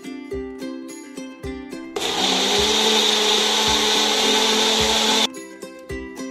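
Electric mixer grinder running for about three seconds, blending a thick banana milkshake, starting about two seconds in and cutting off abruptly about a second before the end. Light plucked background music plays under and around it.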